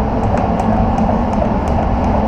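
Paint spray booth's ventilation running: a loud, steady rumble of fans and moving air, with a few faint ticks.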